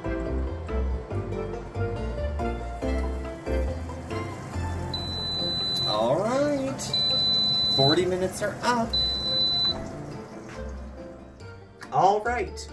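Three long, high-pitched electronic beeps from a Kalorik air fryer oven, about a second each, starting about five seconds in: the cooking timer has run out. Background music plays throughout.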